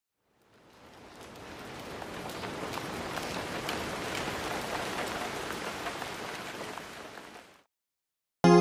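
Steady rain falling, a dense hiss with scattered sharp drop ticks, fading in over the first two seconds and fading out just before the end.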